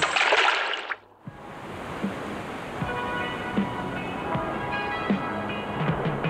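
A loud splash of a body plunging into the sea, lasting about a second. After a brief gap a steady wash of surf follows, with quiet music underneath.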